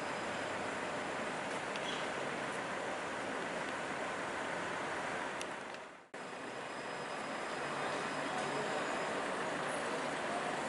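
Steady city street traffic noise with a car driving past. The sound sags and cuts off for an instant about six seconds in, then carries on.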